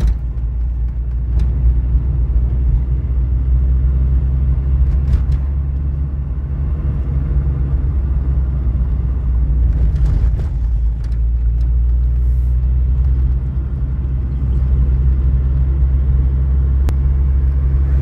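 A car driving at steady speed, heard from inside the cabin: a continuous low rumble of engine and tyres on worn, patched asphalt, with a few faint brief clicks.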